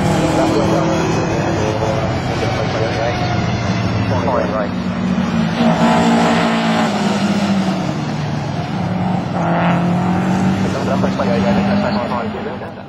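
Racing car engines running hard on the circuit, with several cars going past one after another, the engine note rising and falling as each passes.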